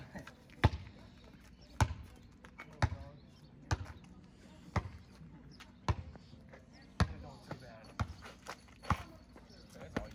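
A basketball dribbled on an asphalt street, bouncing steadily about once a second.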